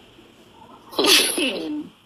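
A woman sneezing once, about a second in: a sharp hissy burst with a voiced part that falls in pitch.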